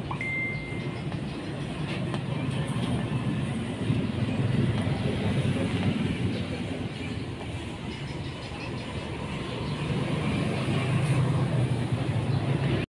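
Steady motor-vehicle engine and traffic rumble, rising and falling a little in level, with a short high beep just after the start.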